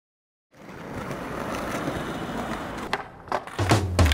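Skateboard wheels rolling on pavement, a steady rumble growing louder, then a few sharp knocks of the board near the end. A low bass note comes in just before the end.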